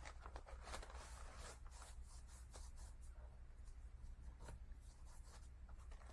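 Faint rustling and rubbing of a crumpled paper towel pressed over damp coffee paint on paper, blotting the paint off, with scattered soft crinkles.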